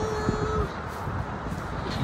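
Road traffic: a steady low rumble of passing cars. A held pitched tone sounds over it for the first half second or so, then stops.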